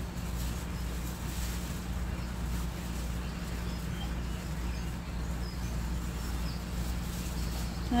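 Faint rustling of dry sphagnum moss as hands work an ivy cutting into it, over a steady low hum.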